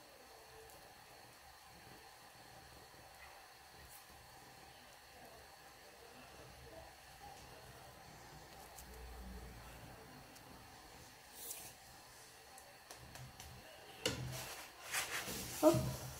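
Near silence with a faint steady hiss while a flatbread cooks in a dry frying pan. Near the end come a few soft knocks and rubbing sounds as a hand handles the bread in the pan.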